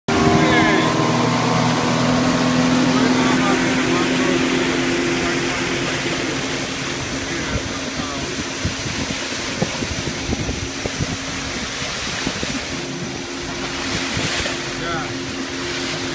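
A small open boat's motor running at a steady speed, with wind and water rushing past. A stretch of rough wind buffeting on the microphone masks the engine tone midway.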